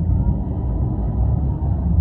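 Twin outboard engines of an Axopar 900 Brabus Shadow running at low, joystick-controlled thrust during a slow dockside maneuver: a steady low rumble.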